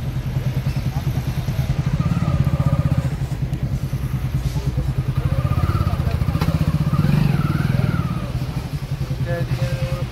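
An engine running steadily nearby, a low, fast, even pulse that carries through the whole stretch, with faint voices behind it.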